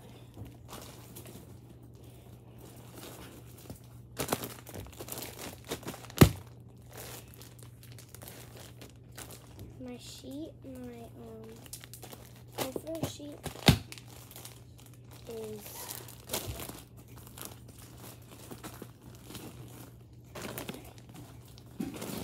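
Plastic bags and clothes crinkling and rustling as they are handled and packed. Two sharp knocks stand out, the louder about six seconds in and another about fourteen seconds in.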